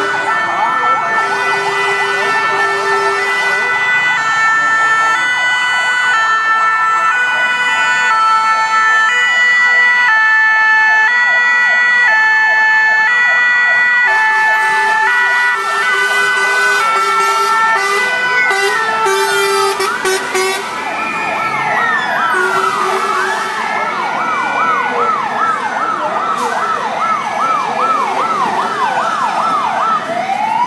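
Several emergency-vehicle sirens sounding at once. A two-tone hi-lo siren steps between two pitches for the first half, then rising and falling wails and a fast warbling yelp take over from about two-thirds of the way through.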